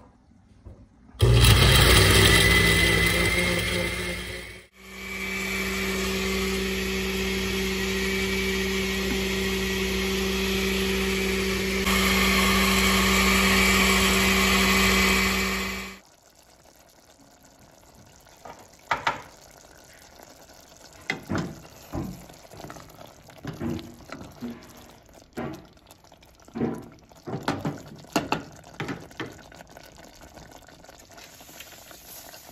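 Glass-jar countertop blender puréeing hydrated dried chiles with meat broth: a loud first run of about three seconds, a brief stop, then a steady run of about eleven seconds that cuts off. After it stops, a pot of tomato-sauce stew with potatoes and carrots simmers with irregular small pops.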